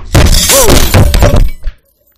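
A microphone falls and strikes a metal desk bar, and the glass jar of coins it was propped on shatters. It makes a very loud crash of breaking glass and spilling change lasting about a second and a half, picked up by the falling microphone itself.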